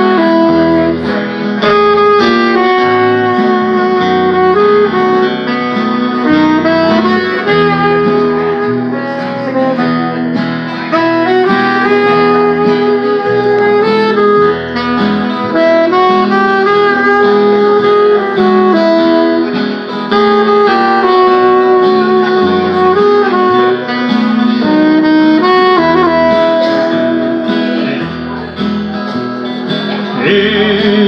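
Live band playing an instrumental passage: a saxophone carries the melody over strummed acoustic guitar and electric bass.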